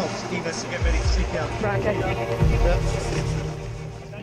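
Background music and indistinct voices over a rescue boat's engine running, with two heavy low thumps about one second and two and a half seconds in.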